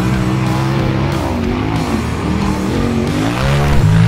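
Side-by-side UTV race car engines revving hard, their pitch rising and falling as the cars accelerate through the dirt, over background music.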